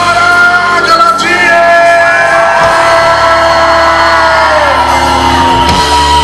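Live pop song: a male singer holds long, drawn-out notes over loud instrumental backing, the last note sliding down in pitch and ending near the end.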